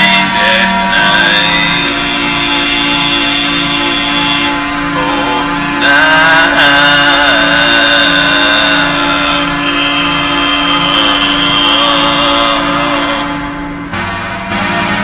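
Instrumental break of the song: a held low note and a steady pulsing beat under wavering, sustained higher instrument lines, with no vocals.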